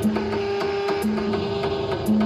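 Industrial electronic music: a short low synth note repeating about once a second over a held tone, with dry mechanical-sounding clicks about four times a second.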